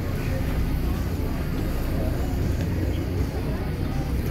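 Steady low rumble of a boat's engine heard on deck, mixed with wind and water noise.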